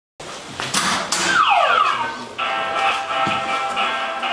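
Boxer arcade punching machine: two sharp knocks about a second in, then the machine's electronic sound effects, first a falling tone and then a steady electronic jingle.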